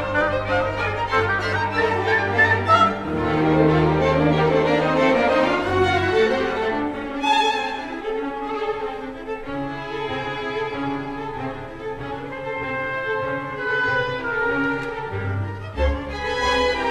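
String orchestra of violins, violas, cellos and double basses playing a classical passage, with sustained low bass notes under the upper strings.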